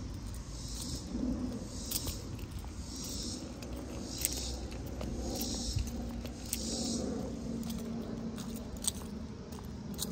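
Footsteps of sneakers on asphalt while walking: a scuffing scrape about once a second in time with the stride, with a few light clicks over a low outdoor rumble.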